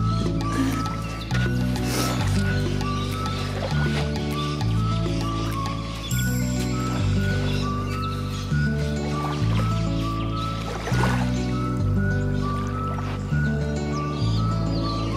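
Background music: an instrumental track of sustained notes and bass tones changing in a steady, even rhythm.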